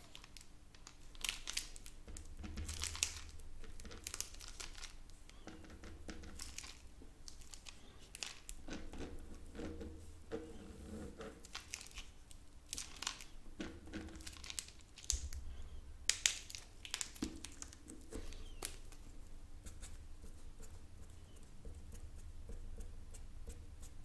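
Felt-tip marker scratching across paper in short, irregular strokes as a drawing is coloured in.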